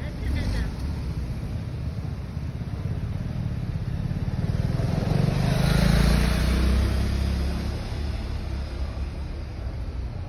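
A motor vehicle passing in the street, its engine and tyre noise swelling to a peak about six seconds in and then fading away over steady street background.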